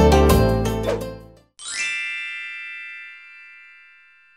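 Background music fading out over the first second and a half, then a single bright chime ding that rings on and slowly dies away.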